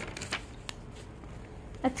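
Printed paper pages being handled and turned: rustling with a few short, crisp flicks.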